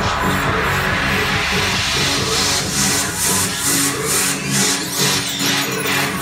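Electronic dance music with a steady beat, played loud through a Crystal Audio 5.1 home theater speaker system and picked up in the room. The deep bass drops away in the second half while the treble swells.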